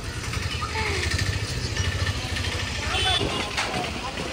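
A motor vehicle's engine running, a low steady rumble in street traffic, with faint voices of people around.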